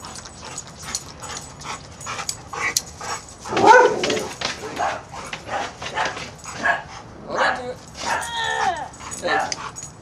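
A dog whimpering and yipping in short, excited calls while it tugs at a fishing line.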